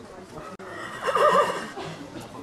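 A horse whinnying once: a loud, wavering call lasting about a second, starting about half a second in.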